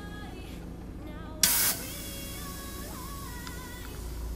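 Compressed air hissing out of a leak at an AccuAir e-Level air-suspension valve manifold, on the right-rear corner's line, with one short, loud burst of hiss about a second and a half in. The leak is caused by the manifold bracket being pulled in and out.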